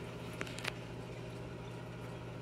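Quiet room tone: a steady low hum, with two faint ticks about half a second in.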